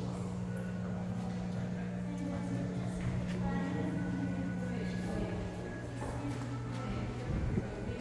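Indistinct voices of people in a large room over a steady low drone, which stops shortly before the end.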